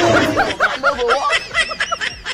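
A man laughing, a quick run of short high 'ha-ha' bursts, about five or six a second.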